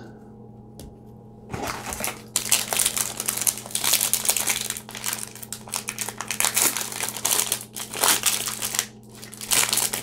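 Trading-card pack wrapper crinkling in the hands as it is opened. It starts about a second and a half in and goes on in rapid, irregular bursts, with a brief pause near the end.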